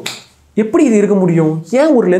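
A man talking to the camera.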